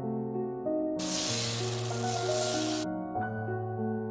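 Background music of sustained notes. From about a second in, quinoa-flour batter hisses as it sizzles on the hot pan for nearly two seconds, and the hiss then cuts off suddenly.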